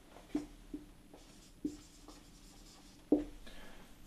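Dry-erase marker writing on a whiteboard: the tip taps against the board four times, each tap ringing briefly in the board, the loudest a little after three seconds in, with faint strokes of the marker between.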